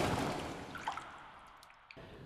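A rush of noise that swells at the start and fades away over about two seconds, with a couple of faint drip-like blips: a whoosh sound effect under the show's animated logo transition.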